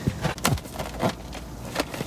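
Fingers handling and knotting the neck of an inflated rubber balloon: rubber rubbing, with a few short sharp squeaks.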